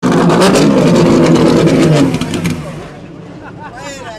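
TC Pista race car's engine running loud and close, then dropping away sharply about two and a half seconds in. Voices follow near the end.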